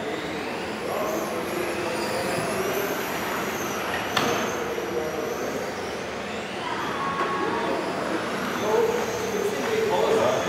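Radio-controlled model cars driving on a hall floor, their motors whining and gliding up and down in pitch as they speed up and slow down, with a sharp knock about four seconds in.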